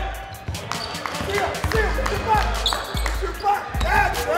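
Basketballs bouncing repeatedly on a gym court in quick, irregular dribbles, with shouting voices and a music track with a heavy bass beat underneath.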